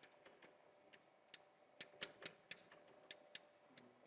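Faint, irregular ticks and taps of chalk writing on a blackboard, about a dozen short strokes, over a faint steady room hum.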